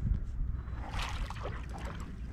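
Water sloshing and trickling close by, with a brief louder splash about a second in, over a steady low rumble.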